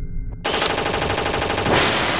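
Sound effect of rapid automatic gunfire: a loud, fast, even rattle that cuts in suddenly about half a second in and gives way to a rushing hiss near the end.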